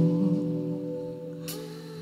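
Live rock band holding a sustained chord: electric guitars ringing out and slowly fading, in a brief lull between song sections.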